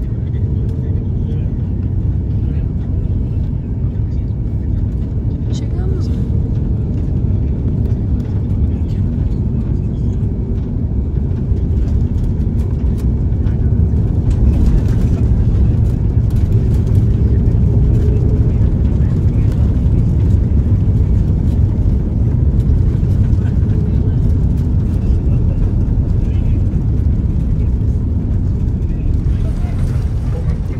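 Cabin noise inside a jet airliner on final approach and landing: a steady low rumble of engines and airflow that gets louder about halfway through, as the jet touches down and rolls along the runway.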